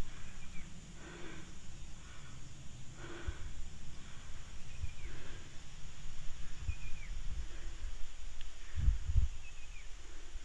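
Outdoor ambience with a low rumble on the microphone that swells into two louder low bumps near the end. Faint short bird calls repeat every two seconds or so, with a few soft breath-like puffs in between.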